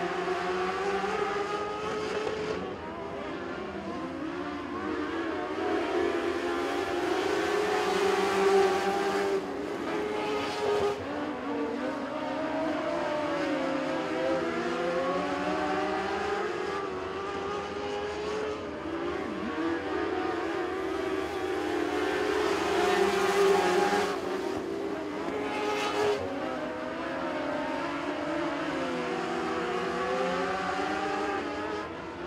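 Several Mod Lite dirt-track race cars running together on an oval, their engines revving up and easing off in turn so the pitch keeps rising and falling. It gets louder twice, as the pack passes close, about eight seconds in and again near twenty-three seconds.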